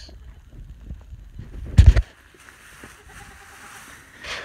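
Low rumbling handling noise on a phone microphone, broken by one loud thump about two seconds in, then a quieter hiss.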